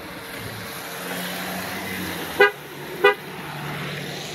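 Two short car horn toots about two-thirds of a second apart, over steady background traffic noise.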